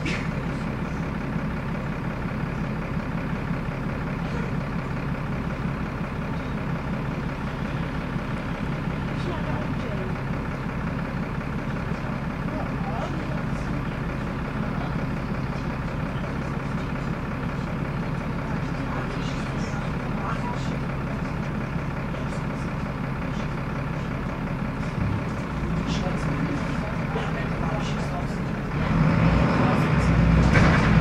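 A Volvo D7C six-cylinder diesel in a Volvo B7L single-decker bus, heard from inside the passenger saloon, running with a steady low hum. Near the end it grows louder and heavier as the engine picks up.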